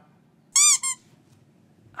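Two quick rubber-duck squeaks about half a second in, the first longer than the second, each rising and then falling in pitch.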